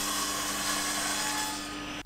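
SawStop table saw ripping a one-inch oak butcher-block slab: a steady high cutting hiss over the motor's hum. Near the end the cutting noise dies away as the blade clears the wood, leaving the saw running.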